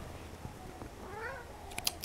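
A domestic cat giving one soft, short meow about a second in, followed by a couple of light clicks.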